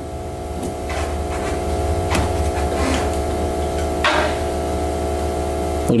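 A steady hum made of several low, level tones over a deeper drone, growing louder over the first couple of seconds and cutting off abruptly near the end, with a few faint clicks or rustles.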